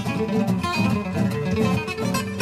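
Gypsy-jazz acoustic guitar played live with a pick: a quick run of single notes over lower notes, on a Selmer-Maccaferri-style guitar.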